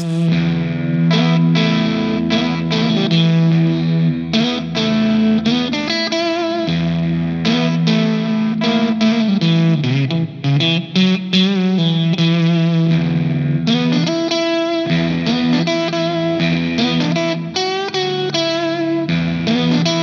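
Electric guitar, a Fender Stratocaster, played through a UAFX Woodrow '55 amp-simulator pedal that models a 1950s Fender tweed amp. It plays a continuous picked riff with an overdriven tone.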